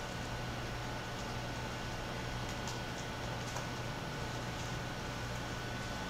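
Steady room hum and hiss, with a few faint clicks of laptop keys being typed.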